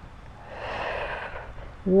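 A woman's audible breath: one long breath lasting about a second and a half, swelling and fading, taken during a seated arm exercise that leaves her a little out of breath. Her voice comes in again right at the end.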